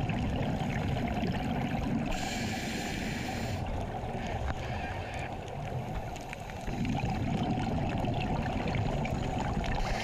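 Steady low rumble and hiss of deep-sea remotely operated vehicle machinery, with a burst of higher hiss about two seconds in that lasts over a second.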